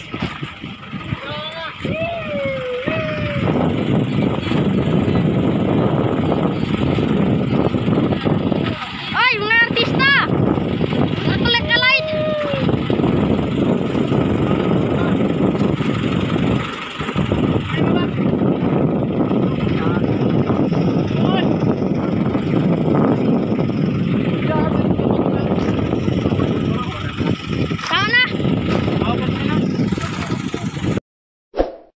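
Steady, loud noise aboard an outrigger fishing boat at sea, with men's voices calling out briefly a few times, near the start, around a third of the way in, and near the end.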